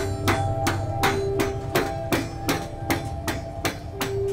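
Hand hammer striking in a steady rhythm, about ten blows at roughly three a second, each with a short ring, over a few steady tones that come and go.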